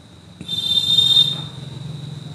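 An insect trilling, a high-pitched buzz that starts about half a second in and fades after about a second, over a low steady hum.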